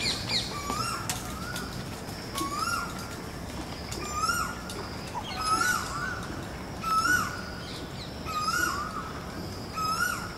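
A bird calling over and over, a short rising call about every one and a half seconds, with other birds chirping higher up and a faint steady high tone.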